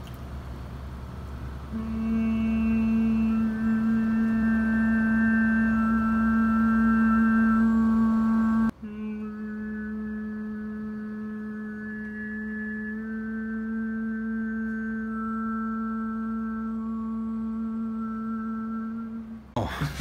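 Male overtone singing: a man holds one low note as a steady hum while single high overtones ring out above it like a whistle and shift from one to another. It comes in two long held stretches, the second one quieter after an abrupt break about nine seconds in.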